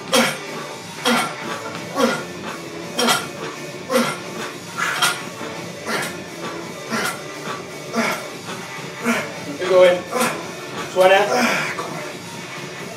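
A lifter grunting with each rep of fast barbell bench presses at 60 kg, about one a second, with metal clinks from the bar and its plates. A longer strained grunt comes about eleven seconds in as the set gets harder. Background music plays.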